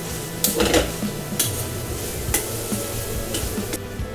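Metal tongs stirring and tossing spaghetti in a stainless steel frying pan, clicking against the pan about five times, over a light sizzle of the pasta and its cooking water on low heat.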